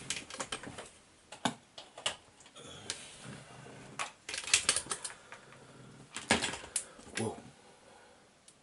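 Irregular plastic clicks and knocks from a laptop charger and its plug being handled and plugged in off-camera, busiest in the second half.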